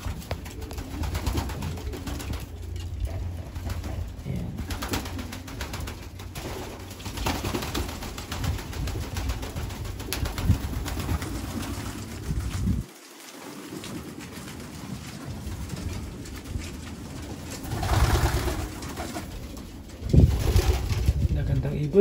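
Racing pigeons cooing in their loft, under a low rumble that cuts off about halfway through.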